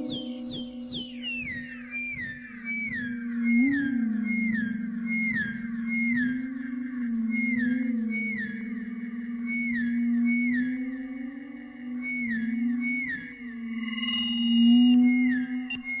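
Electronic music built from audio feedback (Larsen effect) howl and its modulations: a steady low feedback drone with slight wobbles, under a repeating pattern of short, falling high whoops about two a second. Near the end a cluster of higher whistling tones joins in.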